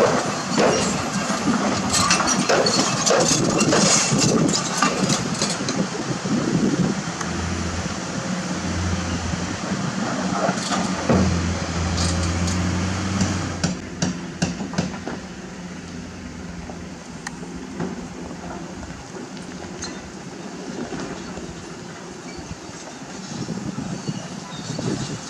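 Komatsu PC200 hydraulic excavator digging in rock: its bucket scrapes and rocks knock and clatter against each other over the steady diesel engine. The engine works harder through the middle, then about halfway through the sound drops to a quieter engine drone with only a few knocks.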